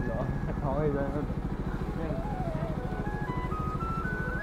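Motor scooter engine running steadily at low speed with an even, fast pulse. Faint music and voices are in the background.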